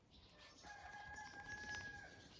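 A rooster crowing faintly, one long level note starting about half a second in.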